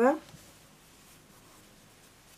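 Faint rubbing of hands handling and turning over a knitted yarn hat, under an otherwise near-quiet room tone.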